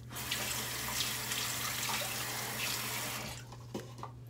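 Bathroom tap running into a sink as clear plastic dental aligners are rinsed clean under it. The water is shut off a little over three seconds in, followed by a small click.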